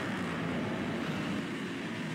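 Motocross bike engines running on a sand track, a steady noise with no speech over it.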